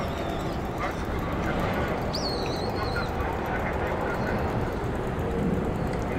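Outdoor ambience with a steady background hum and faint distant voices, and one shrill bird call about two seconds in that jumps up in pitch, then holds and falls away, lasting under a second.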